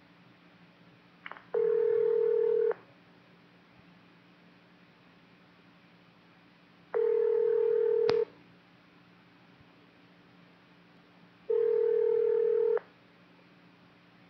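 Three identical long steady beep tones over a railroad radio channel, each a little over a second long and about five seconds apart, with faint radio hiss between them. There is a sharp click near the end of the second tone.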